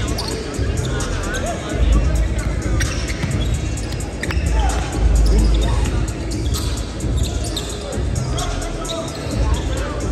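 Basketballs bouncing on a hardwood gym court, with sneakers squeaking and voices in the echoing hall, over background music.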